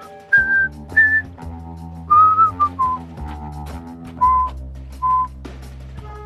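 A tune whistled in short, clear notes, about seven of them, stepping lower in pitch over the course of the tune. Soft background music with sustained chords plays underneath.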